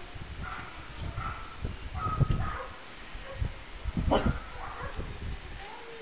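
Caucasian Shepherd puppy whimpering in a series of short, high whines and yips, the loudest about four seconds in.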